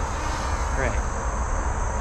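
Steady outdoor background: a constant high-pitched insect drone over a low rumble of freeway traffic.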